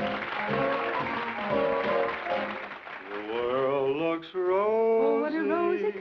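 Dance-band music over audience applause. The applause dies away about three seconds in as a sung melody line begins over the band.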